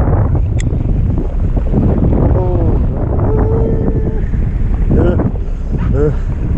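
Wind buffeting the microphone on a fishing boat at sea, a loud, steady low rumble, with the boat's engine noise under it. Brief distant voices call out in the middle.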